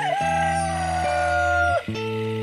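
A rooster crowing once, in one long call lasting nearly two seconds that falls away at the end, over steady background music.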